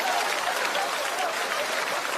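Studio audience applauding and laughing after a stand-up punchline, the clapping slowly dying down.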